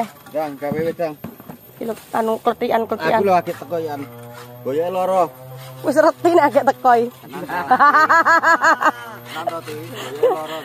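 People talking in a conversation, with a faint steady low hum underneath.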